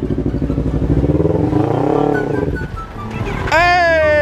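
Sport motorcycle engines running, with one revved briefly up and back down about halfway through. Near the end a louder engine note cuts in and falls steadily in pitch.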